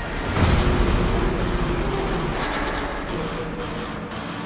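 Race car engines at speed on a circuit: a loud noisy rush comes in suddenly about a third of a second in, then carries on, with music underneath.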